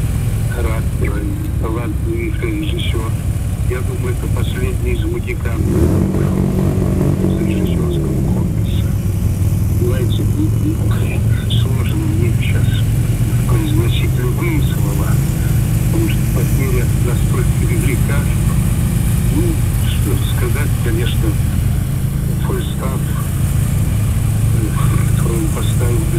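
Big touring motorcycle's engine running at low parade speed, a steady low drone; about six seconds in it picks up and its pitch then falls away over a couple of seconds.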